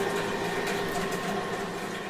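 Indistinct steady background noise: a dense hiss and murmur with a faint steady hum, slowly fading.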